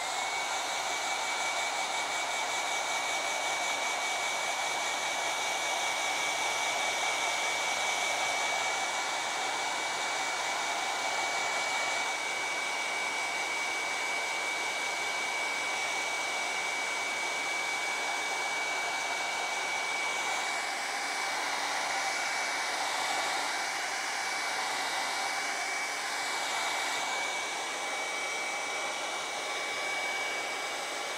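Hand-held hair dryer switching on and running steadily, blowing air to dry wet acrylic paint on a canvas board, with a steady high whine over the rush of air.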